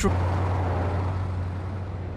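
A steady low rumble with a faint hiss behind it, easing off slightly toward the end.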